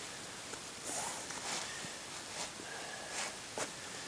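Faint rustling and soft scraping of a lashing cord being threaded under the toe loops on a boot and pulled through by hand, with a few short scuffs.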